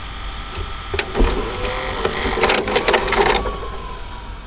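A VHS tape going into a VCR, with the deck's loading mechanism whirring and clicking; the clicks come thickest in a run past the middle, and a thin tone slowly falls in pitch near the end.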